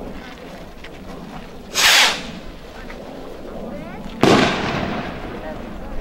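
Two fireworks going off: a short burst about two seconds in, then a louder, sharper bang about four seconds in that trails off over about a second.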